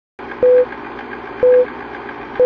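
Film-countdown sound effect: a short, steady beep once a second, twice, over a constant hiss with a faint, rapid ticking like a film projector.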